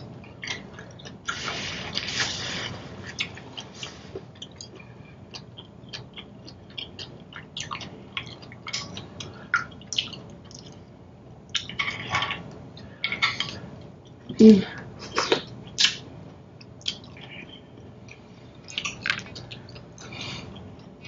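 Close-miked mouth sounds of eating seafood-boil shellfish: chewing, lip smacks and wet clicks, many short and irregular. There is a longer hiss about a second in, and wet squishing as clam and shrimp shells are pulled apart in the buttery broth.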